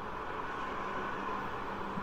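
Steady background hiss with a faint hum, filling a pause between spoken lines.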